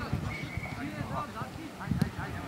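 Voices of footballers calling out during training, with a few dull thumps such as balls being kicked.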